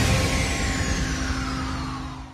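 Outro sound effect under a news channel's logo end card: a broad noisy swell with a slowly falling tone and a steady low hum, fading away near the end.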